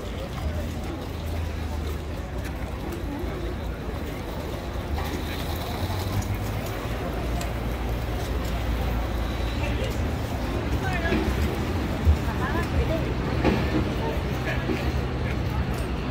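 Busy street ambience: a steady low traffic rumble with passers-by talking in the background, and one sharp knock about three-quarters of the way through.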